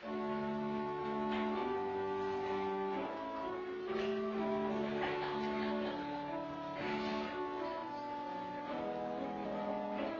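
Church organ playing through the refrain of a hymn as its introduction, in held chords under a slow melody.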